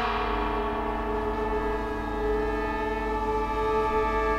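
Ensemble music: a struck, gong-like metal tone rings and slowly dies away over held notes from two bamboo flutes.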